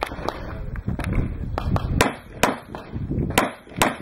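Handgun shots fired during a practical pistol stage: fainter cracks early on, then four sharp shots in two quick pairs about half a second apart, around two and three and a half seconds in.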